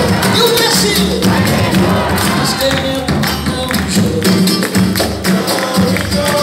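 Live samba band playing loudly: drums and a tambourine-like hand percussion drive a steady beat under guitar and cavaquinho.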